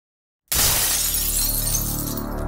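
Silence, then about half a second in a sudden glass-shattering sound effect whose bright crash thins out over the next second or so, over a low sustained music bed.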